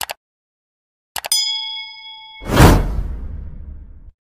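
Subscribe-button animation sound effects: a quick mouse click, then about a second later more clicks and a ringing bell ding with several tones that lasts about a second, then a loud whoosh with a deep boom that fades away.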